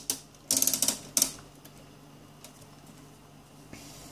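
Test probes and leads clicking and rattling against the signal generator's front-panel terminals in two short bursts, about half a second and a second in, then a few faint ticks over a faint steady hum.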